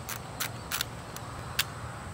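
A few short, sharp clicks from a Fujifilm disposable film camera as a picture is taken.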